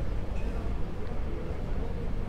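Steady low rumbling background noise with no distinct knocks, clicks or voices.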